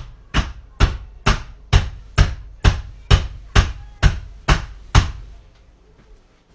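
A loaf mold full of freshly poured hot process soap being rapped down on a table, a dozen evenly spaced thuds about two a second, to settle the soap and knock out air pockets.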